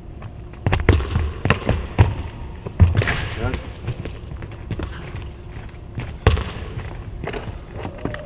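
A handball thudding on a hardwood court floor, with sneaker squeaks and quick footsteps, as a player throws the ball behind him, spins around, recovers it and shoots. There is a cluster of thuds in the first two seconds and one loudest sharp bang about six seconds in.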